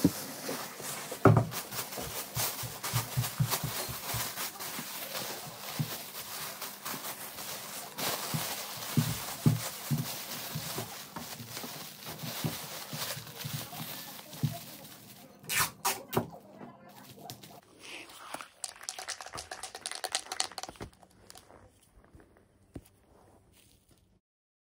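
Thin plastic bag crinkling and rustling as it is handled and wrapped over the top of a lamp base, with small handling knocks; it thins out over the last few seconds.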